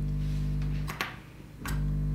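Steady mains hum with many overtones through a Celestion Ditton 33 speaker, driven by an EL34 push-pull valve amplifier whose input is left open to a film capacitor held in the hand. It cuts off with a click about a second in and returns near the end. The hum being this strong shows the capacitor's outer foil is on the signal side, not the earth side.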